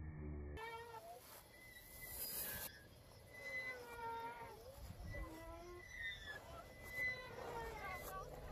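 Faint, repeated high squeaks from a playground swing's metal chain hangers as the swing goes back and forth, each squeak a short gliding whine.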